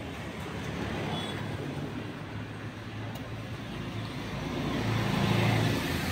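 A motor vehicle's engine running close by amid road traffic noise, a steady low hum that grows louder toward the end.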